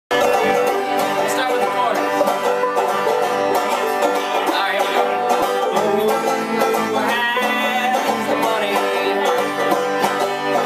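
Banjo strummed and picked in an upbeat bluegrass-style tune, the notes coming in a quick, steady stream.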